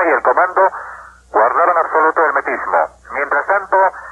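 Only speech: a newsreader reading a news report in Spanish, with short pauses about a second in and near the end. The voice sounds dull, with no high end, as on an old broadcast recording.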